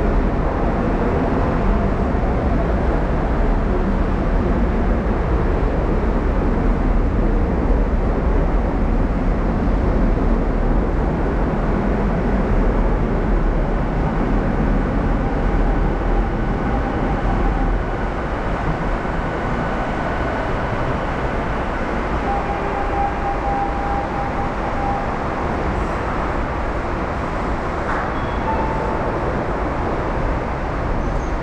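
Subway train pulling into an underground platform: a loud, steady rumble that eases off somewhat about two-thirds of the way through as the train slows, with thin, high, steady squealing tones from the braking train near the end.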